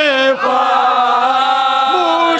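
A group of men chanting unaccompanied in unison: a lead voice and several others hold long drawn-out notes together. Under half a second in, the held note falls and breaks off briefly, and a new sustained phrase begins.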